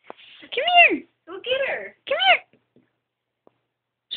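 A cat meowing: three calls in the first two and a half seconds, each rising and falling in pitch.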